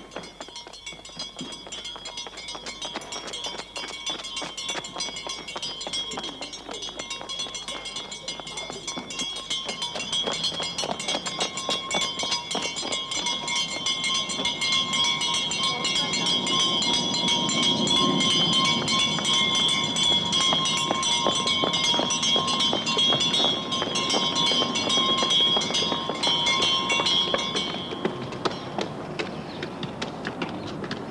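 A school handbell rung rapidly and without pause, the clapper strikes running together under a steady ringing tone that grows gradually louder and stops suddenly near the end. Children's running footsteps go along with it.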